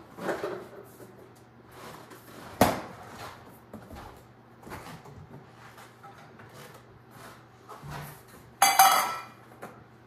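Kitchenware being handled around a cupboard: scattered soft knocks and rummaging, one sharp knock about two and a half seconds in, and near the end a loud ringing clatter of metal on the counter as a small metal measuring cup is set down.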